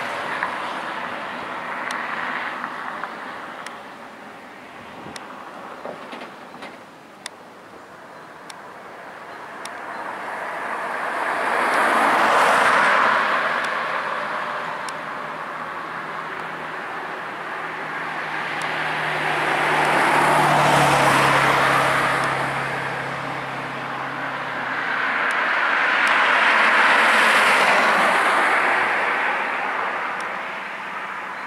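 Bell 206 JetRanger helicopter's single turbine engine and rotor as it flies around at a distance. The sound swells and fades three times: loudest near the middle, about two-thirds through and near the end.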